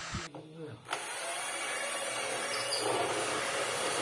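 A power tool running with a steady whirring noise, starting about a second in.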